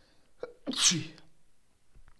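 A man sneezes once, a single short, sharp burst about halfway through.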